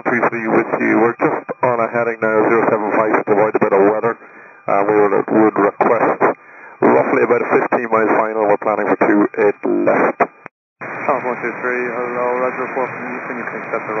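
Air traffic control radio exchange: a pilot's transmission over narrow-band VHF radio, then after a short break about ten seconds in, the controller's reply, which comes through with more hiss.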